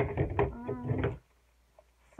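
A person's voice, a brief untranscribed vocal sound lasting about a second, then quiet.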